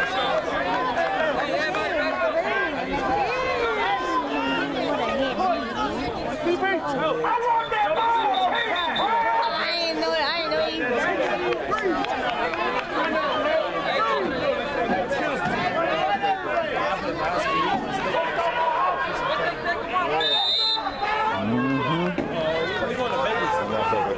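Crowd of spectators chattering, many voices talking over one another without a break. Brief high-pitched tones cut through about halfway and again near the end.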